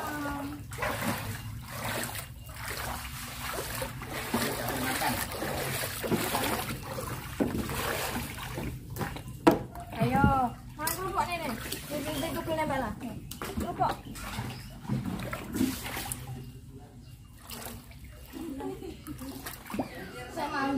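Muddy floodwater splashing and sloshing around a small plastic kayak, mixed with voices making brief wordless sounds.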